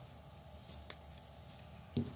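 A single sharp snip about a second in: fishing line being cut with scissors. A light knock near the end.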